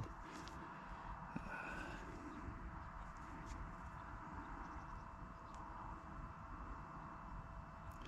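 Quiet outdoor background: faint steady noise with a thin steady hum, and a few faint high chirps about two seconds in.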